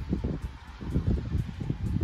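Wind buffeting the microphone: an irregular, gusty low rumble.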